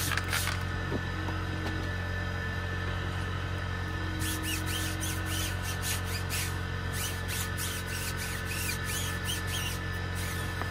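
A trigger spray bottle spritzes wheel cleaner twice at the start. About four seconds in, a stiff-bristled brush starts scrubbing the tire in quick repeated strokes, about two to three a second. A steady low hum runs underneath.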